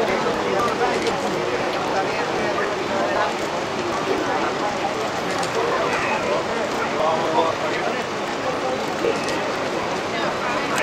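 Many overlapping voices chattering and calling out, with no single clear talker, over a steady rush of water noise from a pack of swimmers splashing.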